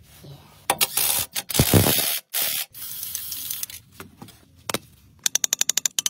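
Hand-tool work on a car's brake caliper: loud scraping and hissing bursts in the first half, then near the end a fast, even run of clicks, about a dozen a second.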